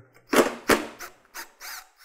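Cordless 3/8-inch impact wrench fired in several short bursts, its hammering mechanism rattling as it backs out a tailgate screw, with a brief motor whine near the end.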